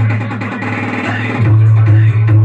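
Music played loud through an STK4141 stereo amplifier and its speakers, with a heavy boosted bass line that dominates the sound. The music gets louder about one and a half seconds in.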